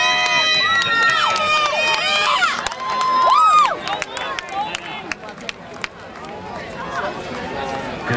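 Track-meet spectators yelling encouragement to passing runners in long drawn-out shouts for the first few seconds, then a quieter stretch of crowd noise with scattered light clicks.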